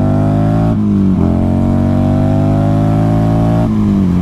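A Buell XB9R Firebolt's air-cooled V-twin pulling under acceleration at riding speed, its note climbing steadily. The pitch falls back about a second in, as at a gear change, then rises again, and drops once more near the end.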